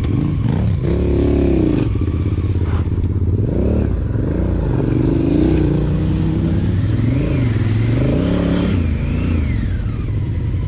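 Large adventure motorcycle engine, heard close from the rider's own bike, revving up and down repeatedly while riding a dirt track. Water splashes through a muddy puddle in the second half.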